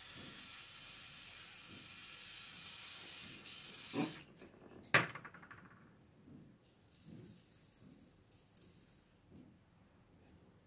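Aerosol can of WD-40-style penetrating spray hissing steadily through its straw into a ball bearing for about four seconds, flushing out the old grease. Then a knock, and a sharper one about five seconds in, followed by faint handling sounds as the bearing is turned in the fingers.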